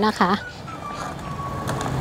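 A steady rushing noise with a low hum, growing louder, from a portable gas stove's burner heating a pot of simmering tom yum soup as straw mushrooms are tipped in.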